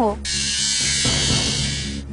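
A television-drama sound effect: a steady, hiss-like noise that starts abruptly just after the line ends and cuts off sharply after under two seconds, over a low background music drone.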